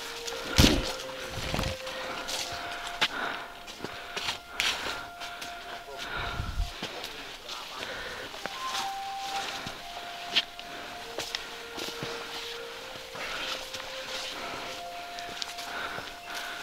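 Footsteps and the brush of vegetation as hikers walk along an overgrown forest trail: irregular soft crunches and knocks, with a few low rumbles near the start and about six seconds in. Faint drawn-out steady tones come and go behind them.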